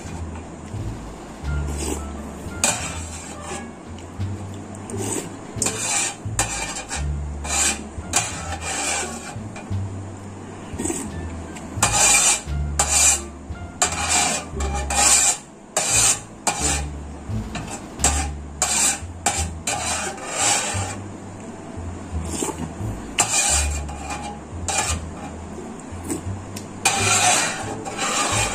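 Metal spoon scraping over a metal baking tray in many short, irregular strokes, gathering up leftover sauce.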